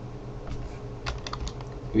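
A few quick clicks of computer keys, bunched about a second in, over a low steady hum.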